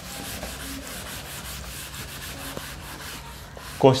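A green chalkboard being erased with a board duster: a steady scraping rub made of quick repeated wiping strokes. A voice starts in near the end.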